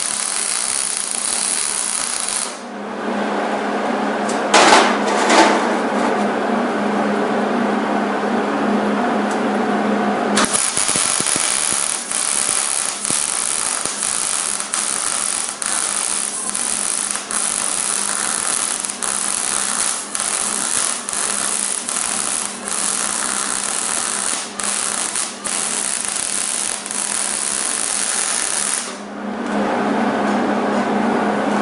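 MIG welding arc sizzling and crackling as a bead is run around a square steel tubing joint, over a steady low hum. The sizzle changes character for several seconds early on, then runs with short regular dips about once a second, and stops near the end as the bead is finished.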